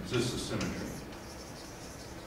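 Chalk scratching and tapping on a blackboard as a line of an equation is written, with a man's voice briefly near the start.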